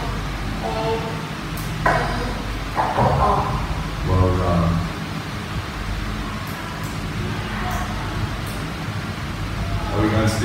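A boy's voice saying letters one at a time with pauses between, spelling out the word "shampoo", over a steady low room hum.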